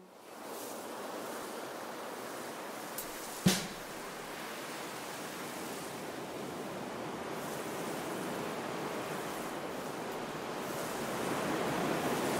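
Steady hiss of a rain sound effect in the intro of a karaoke backing track, swelling slightly toward the end. There is a faint click about three seconds in, then a louder sharp snap just after.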